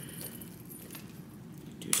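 Heavy metal chain strap of a crossbody bag clinking as it is handled, with a few light clinks and then a louder jangle near the end.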